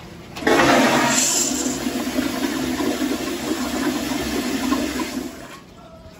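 Acorn stainless steel toilet flushing: a sudden loud rush of water starts about half a second in, runs for about five seconds, then cuts down to a much quieter trickle near the end.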